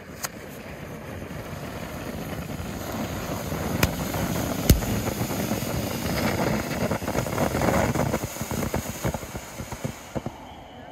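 A fanned multi-tube firework fountain burning with a loud, steady rushing hiss that builds over the first few seconds. Two sharp pops come about four and five seconds in, and the hiss dies away near the end as the tubes burn out.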